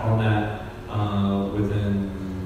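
Speech only: a man talking into a handheld microphone in a low, fairly level voice.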